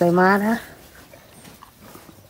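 A voice speaking in a high sing-song for about half a second, then only low background noise.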